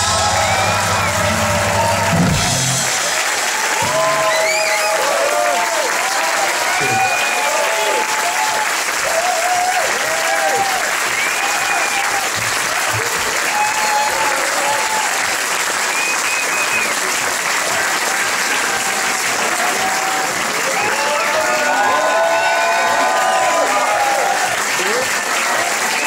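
Concert audience applauding and cheering after the band's final song, with shouts and whistles over the clapping. The band's last chord rings on under it and stops about two and a half seconds in.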